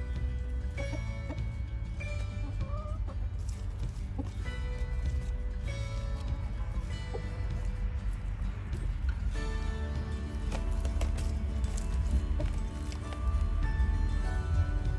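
Chickens clucking over background music with steady held notes.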